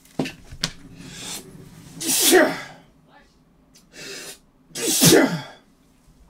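A man sneezing twice, about three seconds apart, each loud sneeze led by a quick in-breath, into his shirt.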